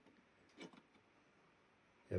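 Near silence: room tone, with one faint, brief sound a little over half a second in.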